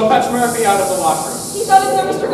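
Actors' voices speaking on stage, over a steady high hiss that stops just before the end.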